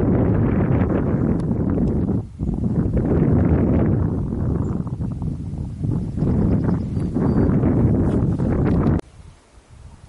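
Wind buffeting the camera microphone: a loud, gusting rumble that dips briefly about two seconds in and cuts off suddenly near the end.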